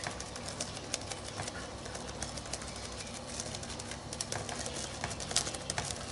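Small makeup sponge dabbing acrylic paint through a stencil onto a paper journal page: faint, irregular soft taps and ticks, over a low steady hum.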